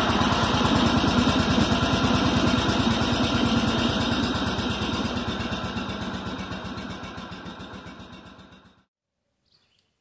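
Small engine running at a steady idle with an even, fast firing beat, having caught just before. It fades away gradually and cuts off near the end.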